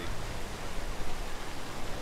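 Steady rush of splashing fountain water, an even hiss with a low rumble underneath.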